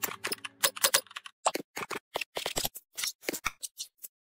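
Computer-keyboard typing sound effect: a quick, uneven run of key clicks, about five a second. The last of the background music fades out in the first second.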